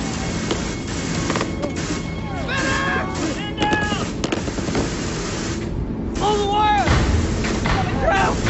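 Battle sound effects from a war drama: scattered gunfire, with men shouting indistinctly several times over it, under a music score. A heavier low rumble comes in near the end.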